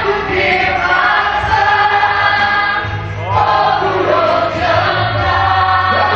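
Live gospel song: a man singing into a microphone, amplified through a PA speaker, over electronic keyboard accompaniment with steady low notes, and other voices singing along.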